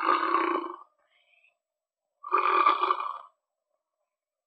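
A voice crying out twice, each cry about a second long and the second coming about two seconds after the first.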